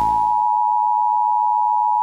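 A steady, pure electronic test tone, the single high beep that goes with a TV test-pattern card, held at one constant pitch. A fading rush of noise sits under it for the first half second.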